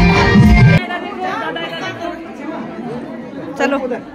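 Music with a heavy bass beat cuts off abruptly under a second in, leaving a roomful of people chatting over one another.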